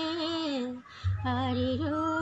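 A woman singing a Tamil song in long held notes with vibrato, breaking off briefly about a second in, over a low pulsing beat.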